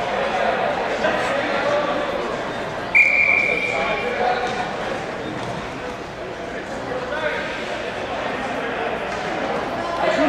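A hockey referee's whistle blown once, a short steady high-pitched blast about three seconds in, over a murmur of arena spectator voices.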